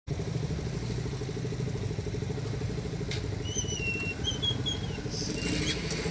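A vehicle engine idling steadily close by, a low rumble with a fast even pulse. A few short, high chirps sound about halfway through.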